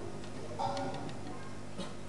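An electronic keyboard being tried out quietly: one short soft note a little over half a second in, and a few light ticks.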